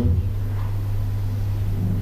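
A steady low hum with a faint even hiss behind it, the hall's background drone.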